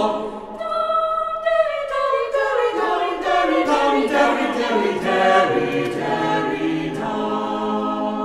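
A small mixed choir of men's and women's voices singing unaccompanied in close harmony, with a long downward slide in pitch through the first half.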